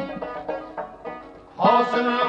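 Uzbek Khorezm folk song recording: a plucked string instrument plays a run of separate notes, and a man's singing voice comes in loudly near the end.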